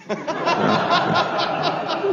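A person laughing: a run of quick chuckles, about five a second.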